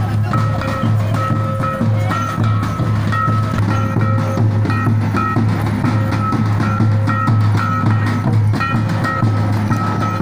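Santal festival dance music: drums beating steadily under a short high melody that repeats over and over.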